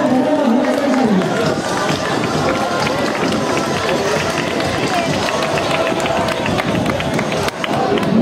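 Footsteps of runners in running shoes passing on an asphalt street, a quick irregular patter of steps, over the chatter of a roadside crowd.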